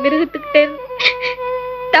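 Film background score holding long, steady notes, with a woman's voice in short, strained bursts over it.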